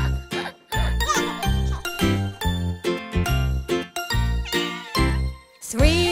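Instrumental children's music with a steady beat of about two notes a second and bright jingling, bell-like tones.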